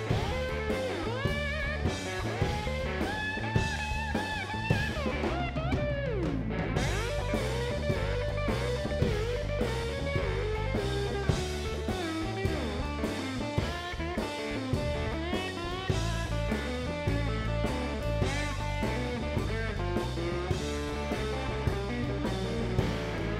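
Blues band playing an instrumental break: an electric lap steel guitar takes the lead with sliding, bending notes, including a long downward slide about six seconds in, over a steady drum kit beat and bass.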